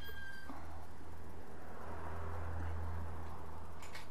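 Single-cylinder motorcycle engine of a BMW G 650 GS Sertao running at a low, steady rumble while the bike moves slowly. A short high-pitched squeak comes at the very start.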